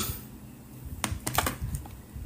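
A quick run of five or six light clicks about a second in, like typing.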